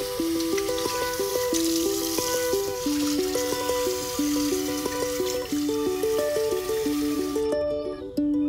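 Background music with a melody of short notes, over a tap running into a basin and water splashing as a face is rinsed; the water stops near the end.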